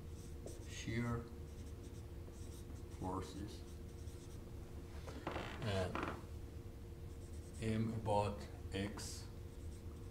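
Dry-erase marker writing on a whiteboard, a handful of separate strokes with pauses between them.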